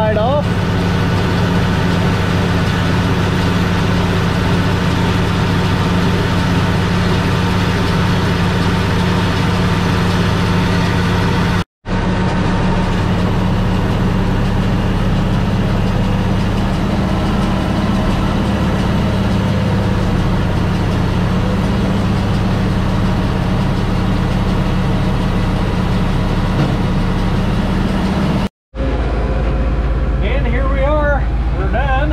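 International 1086's turbocharged six-cylinder diesel engine running steadily at working speed while powering a round baler, heard from inside the tractor cab. The sound cuts out completely for a moment twice, once just before halfway and once near the end.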